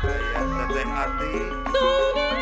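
Live Sundanese gamelan music for wayang golek: the ensemble plays a stepping melody of separate notes, and a sinden's (female singer's) sustained vocal line comes back in near the end.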